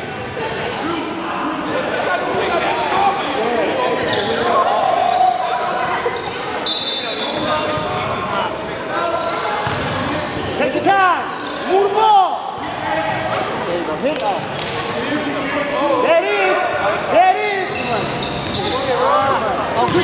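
A basketball game in an echoing gym: the ball bouncing on the hardwood court, many short sneaker squeaks, and indistinct players' voices calling out.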